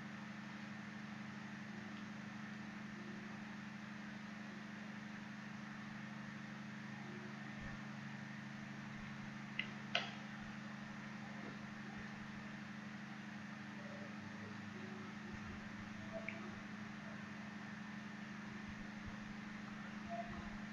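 Low steady electrical hum from the recording setup, broken by a couple of faint computer mouse clicks about ten seconds in and another near sixteen seconds.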